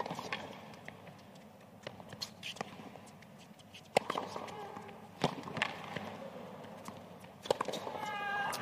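Tennis rally on a hard court: the ball is struck back and forth by rackets, one sharp crack every second or so, with the players' grunts on some shots.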